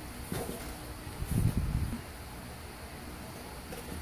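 Quiet room tone during a pause, with one brief low, muffled sound about a second and a half in.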